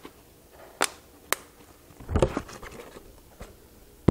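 Handling noise from a plastic water bottle cannon being set up on a table: two sharp taps about half a second apart, then about a second later a louder rustling bump.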